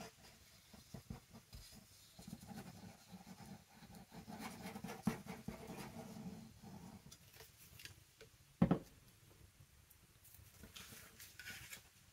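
A liquid glue bottle's nozzle scratching and tapping faintly along paper as a line of glue is laid on an envelope, with light paper rustling. One sharp knock about two-thirds of the way through.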